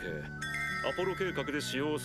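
Anime episode soundtrack: a character speaking Japanese in short phrases over soft background music with steady held tones.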